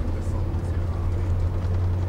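Tour coach's engine and road noise heard from inside the passenger cabin while it drives along: a steady low drone.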